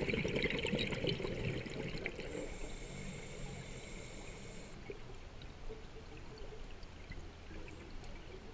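Scuba diver breathing through a regulator underwater: exhaled bubbles burble for the first couple of seconds, then a steady hissing inhale from about two to nearly five seconds in, then quieter water.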